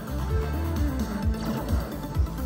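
Ultimate Fire Link Explosion slot machine playing its bonus-round music, a steady beat under held tones, while the free-spin reels spin and a fireball lands.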